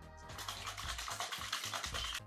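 Small plastic slime-shaker container holding water, powder and glitter being shaken rapidly by hand, a quick scrubbing rattle, with background music under it.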